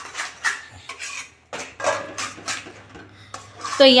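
Metal spatula scraping and knocking against a stainless steel kadhai as it stirs thick gram-flour-and-buttermilk khandvi batter, the batter being cooked down until it turns sticky enough to roll. The strokes come in short irregular runs with a brief pause about a second and a half in.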